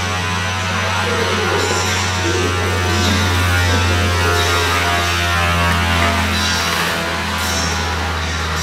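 Sound installation playing through loudspeakers: a loud, steady low drone under a dense, noisy wash of many layered tones. The drone weakens briefly near the end.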